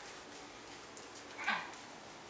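Soft slaps of a toddler's bare feet on a tile floor, with a brief high-pitched vocal squeak about one and a half seconds in.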